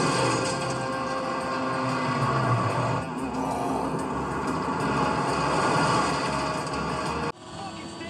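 Movie soundtrack of a truck chase scene: music mixed with a vehicle engine. It cuts off suddenly about seven seconds in, leaving a much quieter background.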